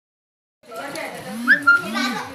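Young children's voices calling out over each other, with a short high squeal about a second and a half in; nothing is heard for the first half second.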